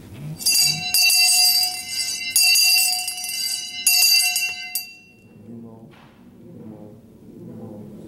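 A metal hand bell rung with about four sharp strokes, each ringing on with a bright, high, sustained tone; the ringing fades out about five seconds in, and a low murmured voice follows.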